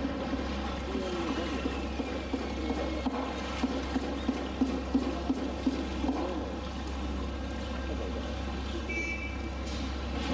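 Water trickling and dripping from a polar bear's wet fur as it climbs out of the pool onto a concrete ledge, with a run of short splashy sounds about four to six seconds in.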